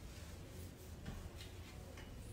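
Quiet room tone with a steady low hum and a few faint, soft clicks and rustles.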